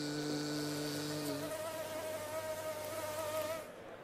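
Mosquito whine sound effect: a steady, annoying buzzing drone that shifts to a higher whine about a second and a half in, then stops shortly before the end.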